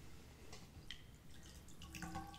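A few faint drips of water falling into a metal bowl.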